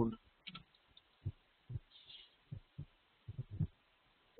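Faint, muffled keystrokes on a computer keyboard: about eight soft, irregular taps as a comment is typed and the file is saved.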